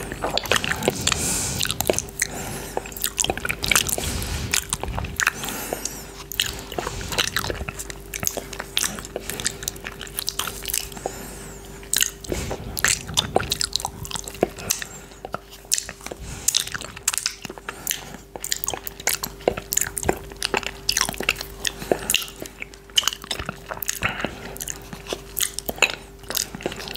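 Close-miked wet mouth sounds of fingers being licked and sucked clean of coconut yogurt: a continuous run of sharp lip smacks and tongue clicks.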